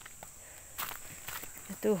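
Footsteps on a steep, dry dirt path strewn with dead leaves: a few faint scuffs and crunches.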